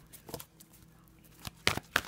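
A deck of oracle cards being shuffled and handled by hand: quiet at first, then several sharp card snaps in the last half-second.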